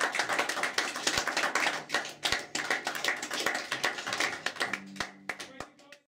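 Audience applauding just after the song ends, the clapping thinning out and fading toward the end. A faint low steady hum comes in briefly near the end.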